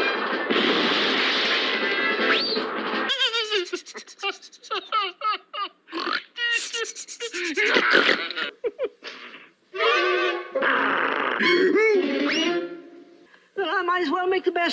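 Animated film soundtrack: music with a dense, busy mix for the first three seconds, then a string of short wordless vocal sounds from cartoon characters, their pitch wavering and sliding.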